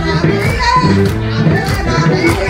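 Live Ethiopian band music: kebero drum strokes in a steady rhythm over held bass krar notes, with a gliding melodic line from the bowed violin and masenko.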